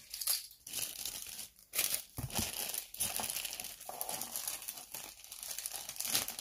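Clear plastic packaging bag crinkling and rustling as it is handled and pulled open, in irregular crackles with short pauses.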